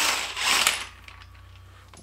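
Cordless impact wrench hammering for about a second as it spins a crankshaft pulley bolt loose with a 19 mm socket, then stopping.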